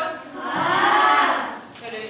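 A class of children answering together in one long, drawn-out chorus that rises and falls in pitch, starting about half a second in and lasting about a second.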